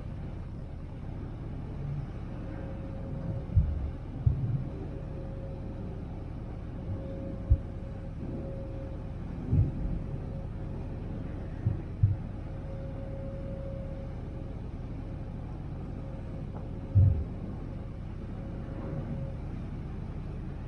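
Steady rumble of a harbour ferry under way, with its engines running and its wake churning. A few short, low thumps come at uneven intervals through it.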